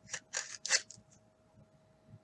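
A cardboard trading card being slid into a rigid plastic top loader: three or four short scraping strokes in the first second.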